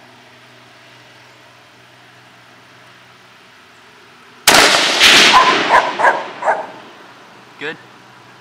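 A single shot from a Savage Model 10 bolt-action .223 Remington rifle about halfway through, with a dog barking several times right after it.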